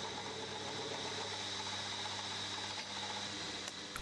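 Milling machine running steadily with an end mill taking a cut across the face of a small workpiece in the vise: an even motor hum with a thin high whine above it.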